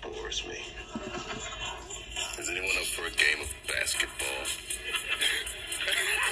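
A soundboard clip playing back music with a voice over it, getting louder towards the end.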